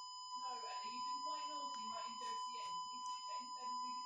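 Steady high-pitched sine test tone, fed through a home-built FuzzDog Spectre Verb reverb pedal (a Ghost Echo clone) with the reverb switched on; the speaker calls it a horrible noise.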